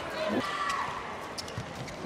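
The ball bouncing on the court during a handball match, over the steady background noise of the crowd in the hall.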